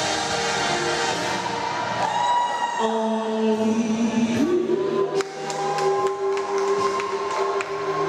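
A woman singing a gospel song into a microphone over musical accompaniment, holding long notes; one sustained note starts about halfway through and is held on.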